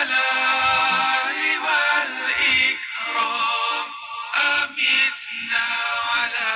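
Sung zikir, an Islamic devotional chant, carried by a voice in long melodic phrases.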